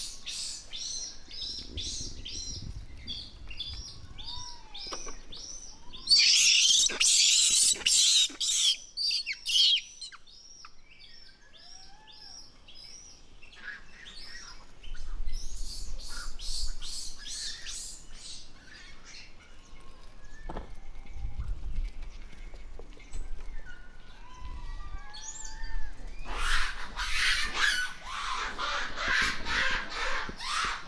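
Rapid trains of short, high chirping calls, several a second, loudest in two dense bursts about six seconds in and near the end, with a few lower, arched calls in between.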